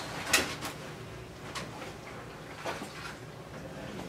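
A plastic bucket knocking lightly against a top-loading washing machine a few times as it is tipped into the drum, over a faint steady trickle of water.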